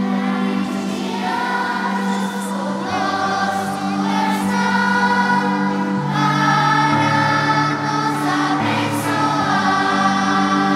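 Children's and youth choir singing a hymn in unison over sustained keyboard chords. The voices come in about half a second in and carry on through.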